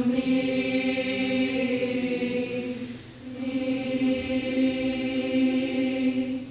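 Mixed-voice high school choir singing two long held chords, with a brief dip between them about three seconds in; the second chord fades out near the end.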